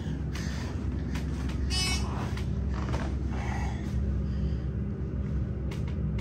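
ThyssenKrupp-modernised hydraulic freight elevator running, heard from inside the car as a steady low hum and rumble, with a brief high chirp about two seconds in.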